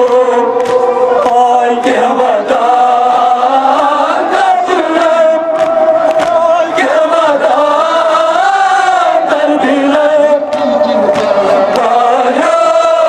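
Male voices chanting a Kashmiri noha (Muharram mourning lament) in unison, with long held notes that slide between pitches, carried over loudspeakers. Irregular sharp slaps of chest-beating (matam) sound through it.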